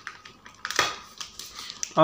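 Fingers poking and tearing open the shiny plastic wrapping of a boxed book: scattered sharp crinkles and a short tearing rustle just before a second in.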